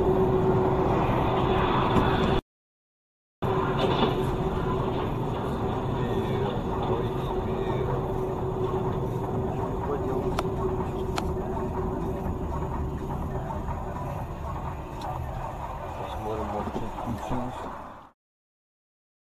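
Road and engine noise inside a moving car, picked up by a dashcam, with a steady hum and voices. The sound cuts out for about a second near the start and fades away at the very end.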